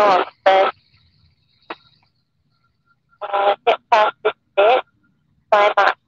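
Short bursts of a person's voice over the aircraft's headset radio or intercom feed: a few clipped syllables about half a second in, then a run of them between about three and five seconds in and one more near the end, with dead silence between bursts and no engine noise heard.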